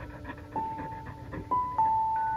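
An Australian Shepherd panting fast and steadily with its mouth open, stress panting from a frightened, trembling dog. A few chiming music notes ring out over it.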